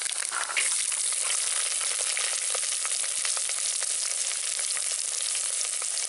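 Garlic cloves frying in hot oil with mustard seeds and fenugreek in a clay pot: a dense sizzle full of small popping crackles. It gets louder about half a second in and then holds steady.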